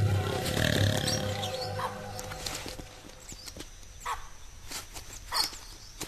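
A lion's low growl fades over the first two seconds under background music. The rest is quieter, with scattered sharp knocks and a few short high-pitched calls near the end.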